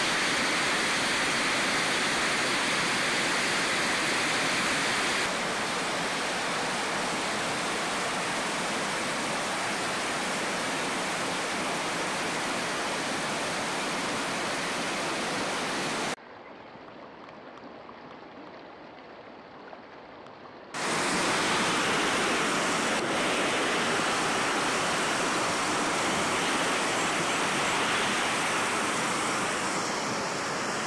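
Water rushing over a weir and down rocky stream cascades: a steady, full white-noise rush. Midway it drops suddenly much quieter for about four seconds, then comes back just as full.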